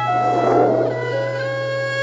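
Background music: a wind instrument playing slow, held notes. The pitch steps down about a second in, with a breathy rush of noise just before, over a steady low hum.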